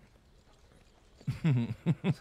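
Horse whinnying in a run of quick, falling pulses, starting a little over a second in after a faint low hum.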